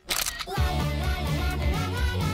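A camera shutter click sound effect, sounding as the music briefly cuts out. About half a second in, the theme music resumes with a steady beat and a melody of sliding notes.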